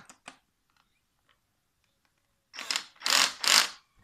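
Black & Decker cordless drill-driver driving a screw into a plastic drill housing. Near the end it runs in three short bursts, its torque clutch clicking as the screw reaches the set tightness.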